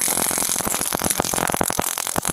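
A Taser cycling its electrical discharge: a rapid, even train of sharp clicks, many per second, heard steadily. This is the sound of a man being shocked after the probes hit him.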